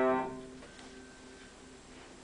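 Upright piano's closing chord, played four hands, ringing out and dying away within about half a second, then quiet room tone.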